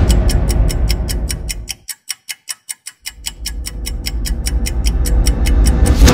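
Song intro built on a clock ticking steadily and quickly, about four to five ticks a second. Under it runs a loud, deep rumble that drops out for about a second around two seconds in, then comes back and swells toward the end.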